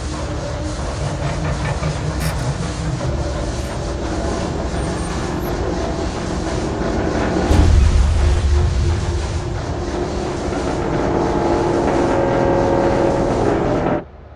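Sound-designed din of giant steam-powered machinery: a continuous heavy rumble with clattering and hiss, a deep boom about halfway through, cutting off abruptly at the end.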